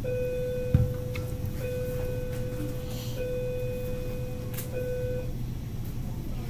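A steady tone held at one unchanging pitch for about five seconds, broken by a few very short gaps, over a steady low hum, with a single thump just under a second in.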